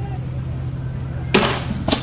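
A steady low hum, broken about 1.3 s in by a sudden loud blast lasting about half a second, with a second, smaller blast just before the end.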